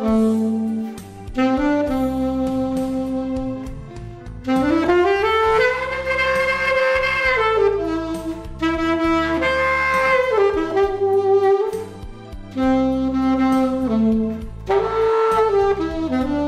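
Alto saxophone playing a slow melody of long held notes, sliding up into a higher phrase about four and a half seconds in. A low sustained accompaniment runs beneath it.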